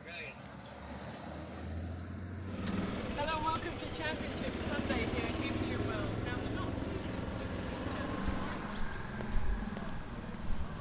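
A car's engine running as it rolls slowly by, with people's voices in the background.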